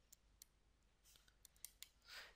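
Near silence broken by a few faint, short clicks from a stylus tapping and writing on a tablet screen.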